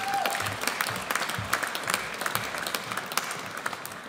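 Audience applauding, dense clapping that fades away over the last second.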